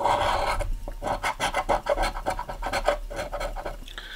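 A coin scratching the coating off a scratch-off lottery ticket in quick back-and-forth rasping strokes.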